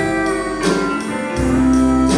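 Live country band playing an instrumental break, a pedal steel guitar carrying sustained notes that glide between pitches over electric guitar, bass and drums.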